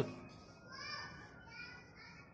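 Faint, distant voices, children's voices among them, with their high pitch coming and going.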